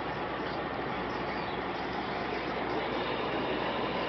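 Steady road noise of motorway driving: an even rush of tyres and wind, growing slightly louder about three seconds in.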